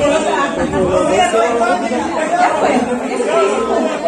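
Crowd chatter: several people talking at once in a crowded room, with no music playing.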